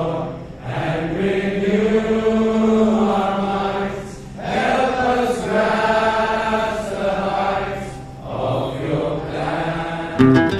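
A large congregation singing a hymn together in unison, in long held phrases of about four seconds with brief pauses for breath between them.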